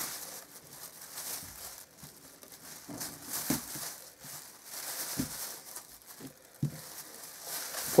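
Thin plastic food bag rustling and crinkling as small cucumbers are put into it by hand, with a few soft knocks as they drop in.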